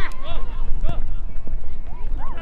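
Several high-pitched young voices shouting and calling out across the pitch during play, over a steady low rumble, with one sharp thump about a second in.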